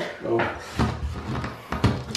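A bathroom cabinet being opened and shut: a light knock about a second in and a sharper wooden thud near the end.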